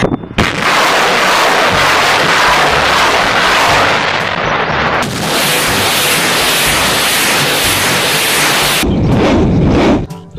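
Truck-mounted multiple rocket launchers firing salvos: a loud, continuous rushing blast of rockets leaving the launch tubes. The sound changes abruptly about five seconds in and again near the end, where separate launch clips are joined.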